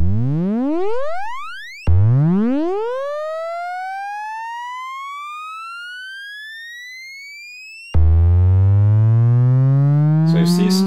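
Serge modular synthesizer oscillator, its sine wave shaped through the Extended ADSR module, sounding in upward pitch sweeps: a quick rising glide, then a second glide that climbs fast and then slowly while fading away over several seconds. Near eight seconds a loud, buzzy tone cuts in and keeps rising slowly in pitch.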